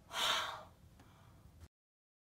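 A short, sharp gasp of shock, a breathy intake lasting about half a second just after the start.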